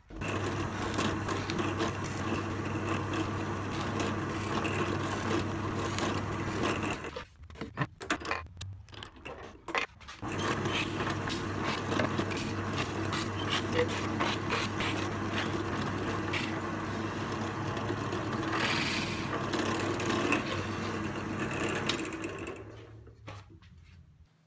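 Bench drill press running steadily while drilling and countersinking screw holes in a melamine-faced chipboard board. The motor drops out and comes back about seven to ten seconds in, then runs on and winds down near the end.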